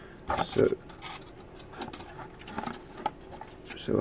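A few faint, scattered clicks and light rubbing as a small metal gauge is handled and set against a wooden hull.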